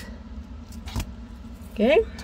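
Jewelry pliers closing a small metal jump ring on an earring: a light metallic click about a second in, with a couple of fainter ticks before it.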